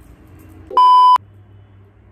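A single loud electronic bleep, a steady high tone lasting about half a second, about three-quarters of a second in; the faint room hum drops out under it, as with a bleep laid into the soundtrack.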